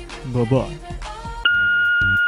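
Voicemail beep: a single steady high tone lasting about a second, starting about one and a half seconds in, the signal that recording of the caller's message begins.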